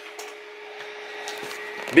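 A steady mechanical hum with a soft hiss over it, one even tone that grows a little louder over the two seconds.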